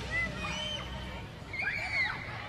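Children's voices calling and squealing over each other, several high cries that rise and fall in pitch.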